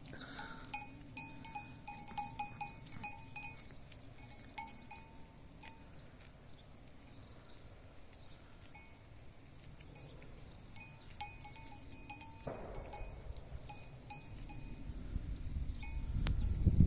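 A small livestock bell worn by a grazing animal, clinking in short irregular jingles. It is busy at first, pauses for a few seconds midway, then resumes.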